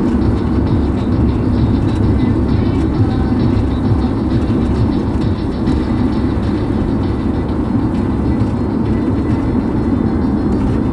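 Steady in-cabin road and engine noise of a car cruising on a motorway, with music playing faintly underneath.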